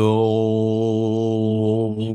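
A man toning: one long, held vocal note on a steady low pitch, with the vowel sliding at the very start. It cuts off just after two seconds.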